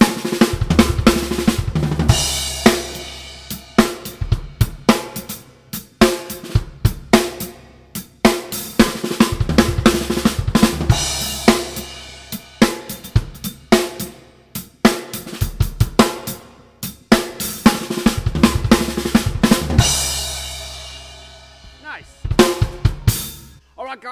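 Acoustic drum kit played through a funk fill pattern several times over: quick six-stroke rolls and kick-and-hand figures on the snare and toms, with bass drum and crash cymbal landing together, so that a ringing crash swells and decays at intervals. The playing stops shortly before the end.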